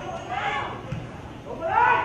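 Voices shouting on a football pitch: two loud calls, one about half a second in and another near the end, each rising and then falling in pitch.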